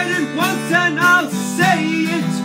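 Acoustic guitar strummed in chords, with a man's voice singing a melody over it.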